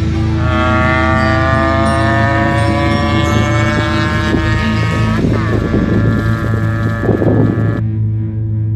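A two-wheeler's motor rising steadily in pitch as it speeds up for about five seconds, then dropping suddenly, with rough noise after it, all over background music.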